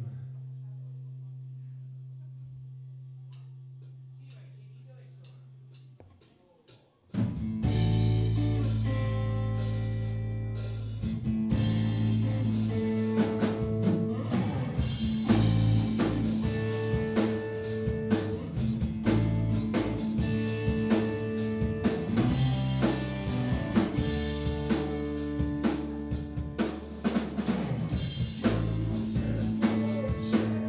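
A low held tone fades away over the first six seconds; then, about seven seconds in, a live hard blues-rock trio kicks in loud with drum kit, electric bass and electric guitar playing the song's instrumental opening.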